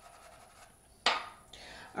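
Quiet room tone broken by a single sharp click about a second in, followed by a faint hiss just before speech resumes.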